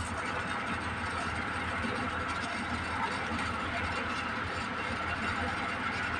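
A steady low hum with a hiss of background noise, even in level throughout.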